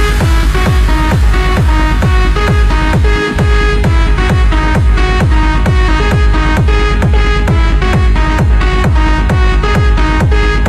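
Techno track playing in a DJ mix: a four-on-the-floor kick drum drops back in right at the start and pounds steadily at about two beats a second under a repeating synth line.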